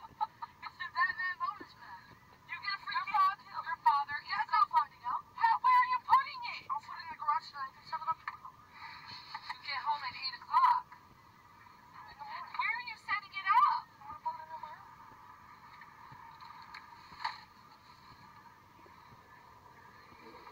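Thin, tinny voices of people arguing, played back from a video through a phone speaker. The talk stops about two-thirds of the way through, leaving a faint hiss with one short sound near the end.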